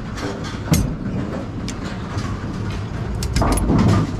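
Steady low machinery rumble in a bowling-center pinsetter area, swelling slightly near the end. A sharp click comes about three-quarters of a second in, and lighter clicks of handling follow.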